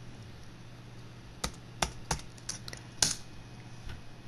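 Keys on a Lenovo S10-3t netbook's keyboard clicking as a password is typed in. About a dozen quick, irregular keystrokes start about a second and a half in, over a faint steady hum.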